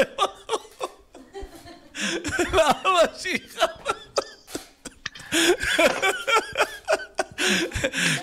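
A man laughing heartily over a video-call link, mixed with bursts of indistinct talk in two spells.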